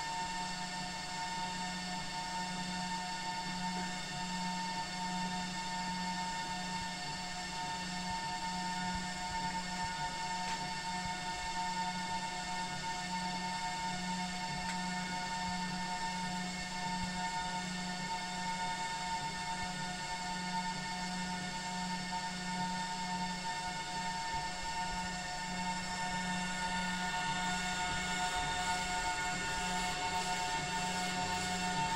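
UV printer running, its cooling fans and ink pump giving a steady hum with several steady whining tones; it grows a little louder and hissier near the end.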